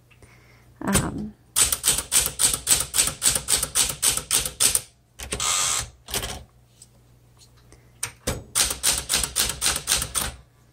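Type bars of a 1969 Smith Corona Classic 12 manual typewriter striking the platen: one strike, then a quick run of typing at about six keystrokes a second. Midway the carriage-return lever is thrown, with a short rushing noise as the carriage slides back and a knock as it stops. A second run of typing follows near the end.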